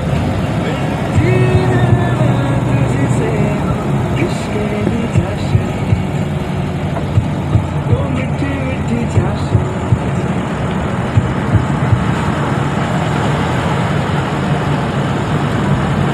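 Engine and road noise of a car driving along, heard from on board: a steady low hum under constant rushing noise, with scattered short knocks.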